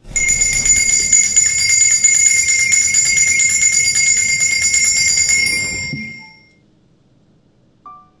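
Altar bells, a cluster of small sanctus bells, shaken rapidly for about six seconds to mark the elevation of the chalice at the consecration. The ringing is loud and ends with a short fade about six seconds in.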